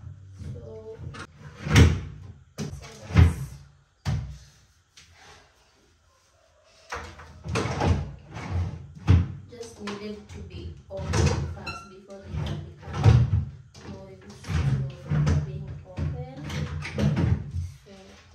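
Desk drawers being pulled open and pushed shut, with sharp knocks as they close, the loudest about two seconds in and again a second later. Background music with a steady bass runs under it, dropping out for a few seconds in the middle.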